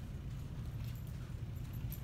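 A small dog on a leash moving about: a few faint light clicks and a brief high jingle over a steady low room hum.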